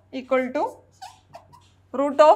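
A woman's voice saying a short drawn-out syllable that rises in pitch, then a few brief faint squeaks of a marker writing on a whiteboard.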